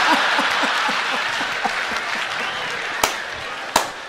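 A live audience laughing and applauding after a stand-up comedy punchline, the applause slowly fading, with a man laughing in short repeated bursts over it. Two sharp clicks sound about three seconds in and just before the end.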